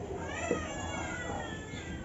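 Whiteboard marker squeaking in high, wavering tones as a word is written on the board.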